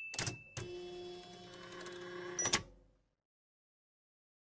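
Sound effects for an animated end card: a short swoosh, then a steady mechanical hum with a faint held tone for about two seconds, cut off by a sharp click.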